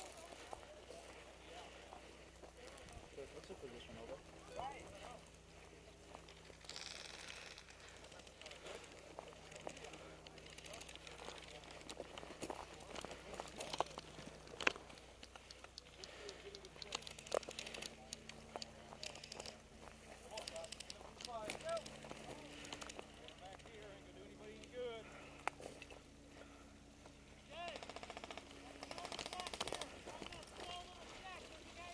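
Distant airsoft guns firing: scattered strings of light clicks and pops, thickest through the middle, with two sharper cracks a little before halfway. Faint voices sound in the distance.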